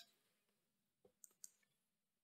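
Near silence, with two faint short clicks a little over a second in.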